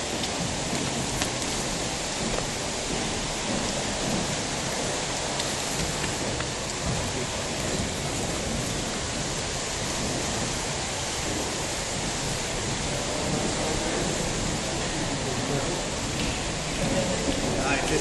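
Steady rain-like rushing of water, even and unbroken, with faint voices under it.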